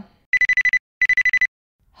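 Electronic phone ringtone, an incoming call: two short trills of a high, rapidly pulsing tone, each about half a second long.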